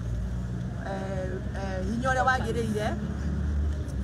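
A woman speaking, over a low rumble that is strongest near the end.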